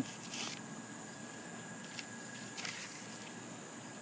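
Soft handling of photo prints: a brief rustle about half a second in and a few light ticks a little past halfway, over a steady faint hiss of background noise.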